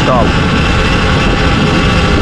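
Sur-Ron Ultra Bee electric dirt bike coasting downhill at about 33 km/h under maximum coast regeneration, its drivetrain giving a steady high whine. Heavy wind buffeting on the microphone runs underneath.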